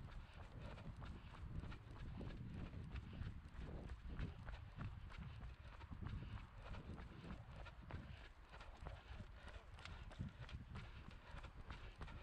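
A runner's own footsteps on a tarmac path, heard through a head-mounted camera as a steady running rhythm of light strikes, over a low rumble from movement on the microphone.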